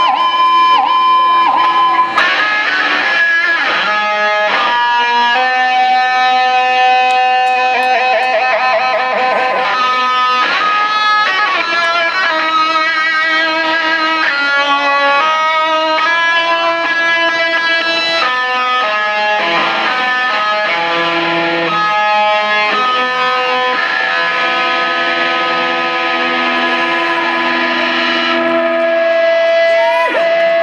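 Electric guitar lead played live through an amplifier: a single-note line of long held notes, several of them with a wide vibrato.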